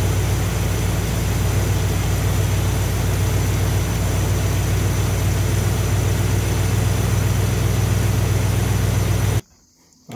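Chrysler V8 with a Thermoquad four-barrel carburetor idling steadily, warmed up, while its idle mixture screws are being turned out to find the highest idle and vacuum. The engine sound cuts off abruptly near the end.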